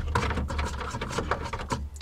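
Plastic thumb wheels on the back of a Mercedes W116 tail light being unscrewed by hand: a run of small, irregular plastic rubbing and clicking sounds.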